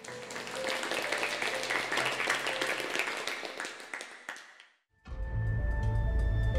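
Applause with soft music underneath, fading away over about four and a half seconds. After a moment of silence, music with a deep, pulsing bass begins near the end.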